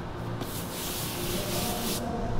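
A large painted sheet being lifted and turned over, its surface rubbing and sliding against the sheets beneath for about a second and a half, starting about half a second in.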